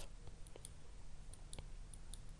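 Faint scattered clicks, a handful of them, over a low steady background hum during a pause in speech.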